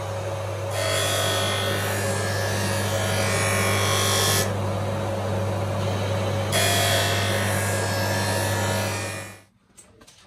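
Bench-top skate sharpening machine running with a steady motor hum while a hockey skate blade is ground on its wheel. There are two long grinding passes, each a loud hissing grind, with the plain motor hum between them. The sound cuts off suddenly shortly before the end.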